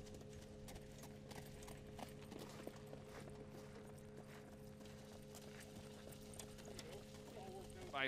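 Faint hoofbeats of standardbred pacers jogging on the track as they pull their sulkies and slow down, with a steady low hum underneath.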